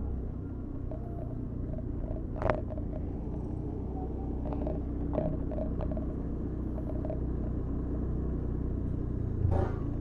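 Steady low rumble of a vehicle moving slowly through street traffic: engine and road noise.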